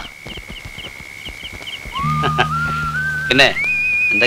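A steady high tone with faint regular pips stops about two seconds in. A whistle then glides upward in pitch and settles into a wavering high note over low, sustained film-score music.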